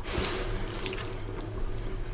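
Wet sound of cooked rice being mixed by hand with oily fish curry, loudest in the first second, with a few small ticks.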